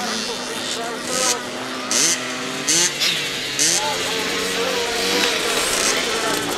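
Several 65 cc youth motocross bikes with small two-stroke engines ride past together. Their engines rise and fall in pitch as the riders work the throttle through a corner, with short sharp bursts of high revs.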